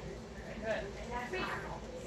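Indistinct speech in short phrases, with no other clear sound standing out.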